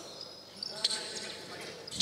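Quiet indoor basketball-hall ambience during a stoppage in play, with faint distant voices and a single sharp knock about a second in.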